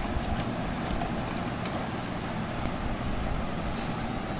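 Battery-powered toy car switched on and running, giving a steady, engine-like rumbling noise, with a brief hiss near the end.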